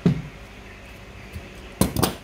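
Scissors being handled on a work table after cutting hand-sewing thread: a short knock at the start, then two sharp clicks close together near the end.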